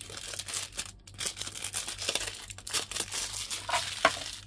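Clear plastic wrappers around small plastic macaron containers crinkling and crackling as they are handled and gathered up by hand, an irregular run of crackles.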